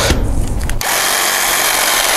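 A small power tool, such as a trimmer, starts up about a second in and runs steadily with a dense hiss, used to trim a columnar thuja.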